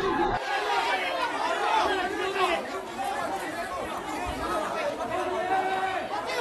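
Several people talking at once, their voices overlapping into a steady chatter.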